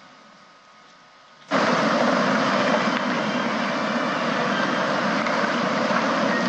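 Room noise of a large hall full of people: a steady, loud rushing noise that starts abruptly about a second and a half in, after a low hush.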